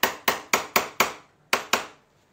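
Metal hammer striking a wood chisel's handle in quick, sharp blows, about four a second, chopping a mortise into a block of solid wood. Seven knocks with a short pause after the fifth, stopping just before the end.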